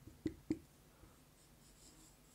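Marker writing on a whiteboard: a few short, faint strokes in the first half second, then near silence.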